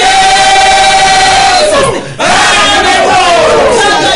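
Several voices crying out loudly together in fervent worship: one long held cry, a short break about two seconds in, then more overlapping cries rising and falling in pitch.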